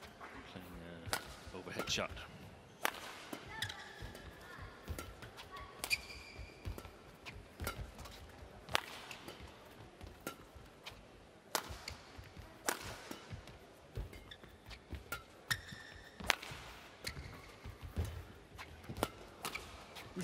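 Badminton rally: sharp cracks of rackets striking a shuttlecock, about one a second, traded back and forth between two players. Between the hits come short squeaks of court shoes on the mat.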